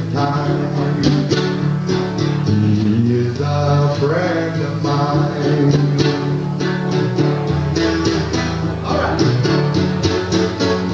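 A man singing a slow blues song while accompanying himself on guitar, the strings picked and strummed throughout.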